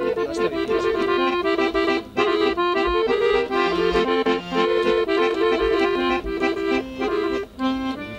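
Solo accordion playing a lively folk melody of quick, changing notes.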